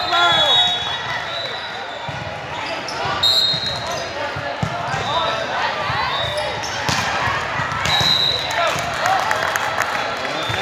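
A volleyball rally on a hardwood court in a large hall: sharp knocks of the ball being hit and brief high sneaker squeaks, among players' and spectators' calls.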